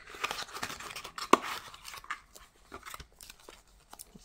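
Folded paper owner's manual being handled and unfolded, rustling and crinkling, with one sharp tap a little over a second in.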